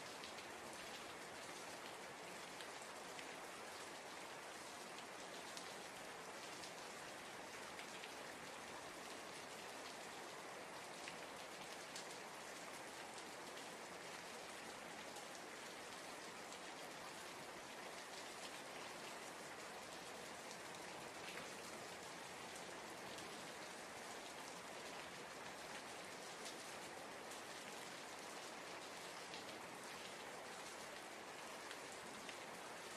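Steady rain falling, a faint even patter with the odd single louder drop.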